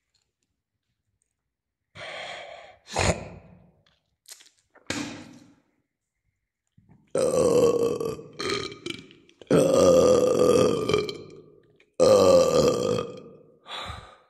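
A person's voice: a series of loud, pitched vocal bursts starting about two seconds in, the longer ones lasting a second or more, with a sharp knock about three seconds in.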